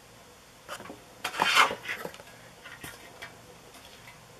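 A small hinged metal tin being handled, with a few light metallic clicks and clatters, loudest in a short cluster about a second and a half in.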